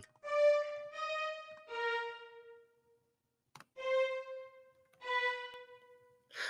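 MuseScore's sampled violin sound playing back single notes as each one is entered into a violin staff: five short, separate notes, each at one pitch, stepping slightly lower over the run. A brief click falls between the third and fourth notes.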